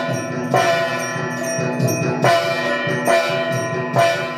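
Metal bells ringing in an aarti, the lamp-waving offering. Fresh strikes come about every half second to a second over a continuous ring, with a rhythmic lower percussion beneath.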